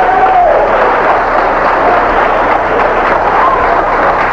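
Audience clapping and cheering in a steady, loud wash of noise, with a few voices calling out over it.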